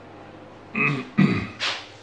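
A man clearing his throat and coughing: three short, rough vocal sounds in the second half, the last the harshest.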